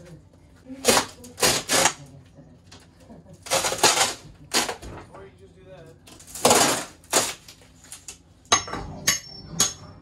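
Wall paneling cracking and tearing as it is pulled and broken off the wall by hand, in several short, sharp bursts. Near the end come a few ringing metal knocks, as a hammer strikes a pry bar.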